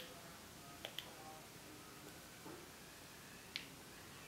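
A few faint, sharp clicks of a Wii Nunchuk controller being handled: one at the start, two close together about a second in, and one more near the end.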